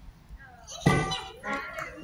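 A sudden loud hit about a second in, followed by a voice, with another sharp hit at the very end.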